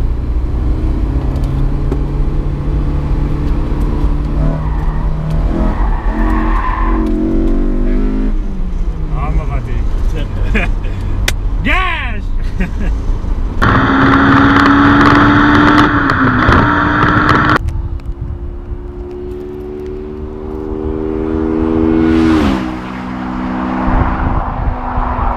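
Honda S2000's four-cylinder VTEC engine heard inside the cabin, the revs falling away and then a hard pull to high revs that lasts several seconds. Then, from the roadside, the car is heard coming closer with its engine note climbing, and the pitch drops sharply as it goes past.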